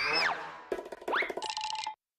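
Animated production-company logo sting: playful cartoon sound effects with a falling pitch glide, a quick rising glide about a second in, then a short ringing ding that cuts off abruptly just before the end.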